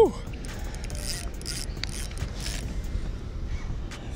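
Spinning reel working under the pull of a hooked musky on a light spinning rod, a steady mechanical sound without clear rhythm.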